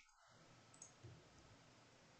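Near silence with two faint, short clicks a little under a second in and about a second in, from computer input while a line of code is copied and pasted.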